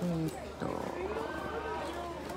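A woman's voice speaks a short word at the start, then quieter background voices and shop hubbub, with a steady low hum underneath.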